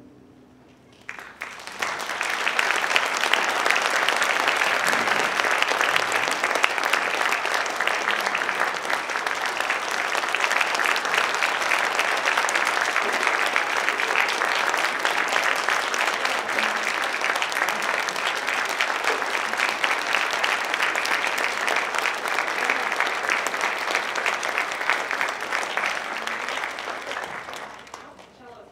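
Audience applauding: a brief hush, then applause that starts about a second in, holds steady, and dies away near the end.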